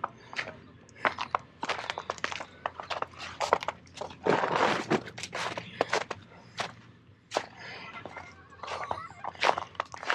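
Footsteps crunching through fresh snow, an irregular run of crisp crackling steps.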